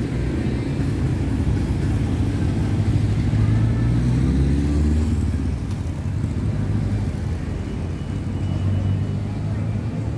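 Road traffic: motor vehicles running along the street as a low, steady rumble, with one engine growing louder about three to five seconds in as it passes.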